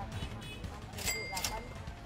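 Background music under faint shop chatter, with a bright metallic ding sound effect, struck twice about a second in and ringing briefly.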